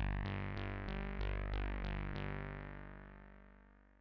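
Elektron Digitakt synth voices: the same note struck again and again, about three times a second, each bright attack quickly mellowing while the earlier notes keep ringing under it, since round-robin voice allocation sends each hit to a fresh voice with a long release. After about two seconds the playing stops and the overlapping notes fade out slowly.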